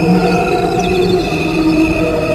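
Slowed-down recording of crickets chirping, which sounds like a choir holding steady chords, played over a layer of the crickets' natural chirping.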